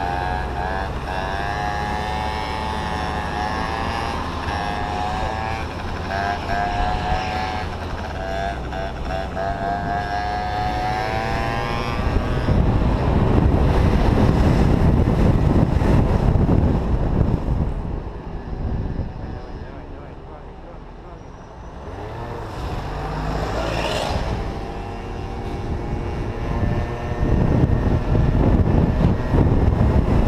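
Yamaha scooter engine running with a wavering pitch at low speed in traffic, then loud wind buffeting the microphone as the scooter speeds up about twelve seconds in. The wind eases for a few seconds and builds again near the end, with a brief rising engine note between.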